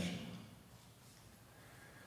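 Near silence: faint room tone in a reverberant stone chapel, with the tail of a man's voice dying away in the first moment.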